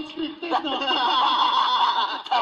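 Laughter and chuckling mixed with talk, following a joke.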